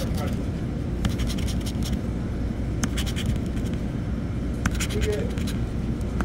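A pencil scraping the coating off a scratch-off lottery ticket in short, quick strokes, over a steady low rumble.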